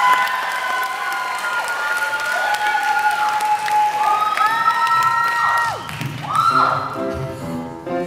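Audience applauding and cheering, with long whoops over the clapping, as a song ends. About six seconds in, a keyboard accompaniment starts the next song.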